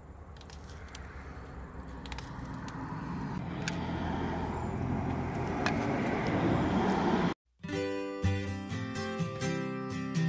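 An even outdoor background noise that slowly grows louder, with a few faint clicks. About seven seconds in it cuts out abruptly and acoustic guitar music starts.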